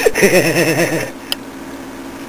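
A man laughing, a run of quick chuckles lasting about a second. Then a faint steady hum with one brief click.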